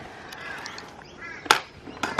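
A stunt scooter riding a concrete skatepark bowl: a quiet steady rolling hiss, then one sharp clack about one and a half seconds in as the scooter strikes the concrete. A faint bird chirp sounds just before the clack.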